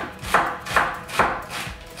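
Chef's knife dicing an onion on a wooden cutting board: a steady run of chopping strokes, each blade knocking on the board, about two and a half a second.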